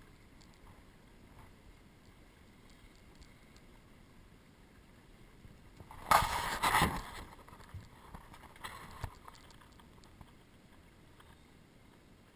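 Choppy tidal water lapping faintly around a drifting small boat, with a loud burst of splashing against the hull about six seconds in that lasts about a second, then a few smaller splashes.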